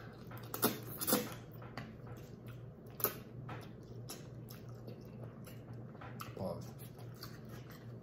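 People quietly chewing mouthfuls of spaghetti, with a few short clicks and mouth noises over a steady low hum, and a brief murmur about six seconds in.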